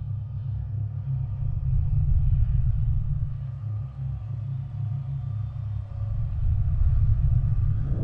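Deep, steady low rumble with faint held tones above it, swelling louder a couple of times: a bass drone opening the track before the guitars come in.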